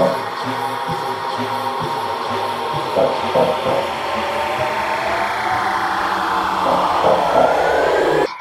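Electronic bass house music in a build-up: a sustained noise swell with a long falling pitch sweep, crossed near the end by a rising one, over a sparse beat.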